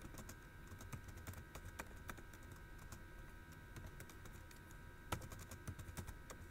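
Typing on a computer keyboard: a run of faint, quick key clicks, with one louder click about five seconds in.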